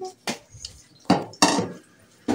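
Dishes and a cup being washed by hand, knocking against a stainless-steel sink in three sharp clinks.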